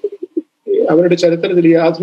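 A man speaking, with a few clipped syllables and a short pause about half a second in before he carries on.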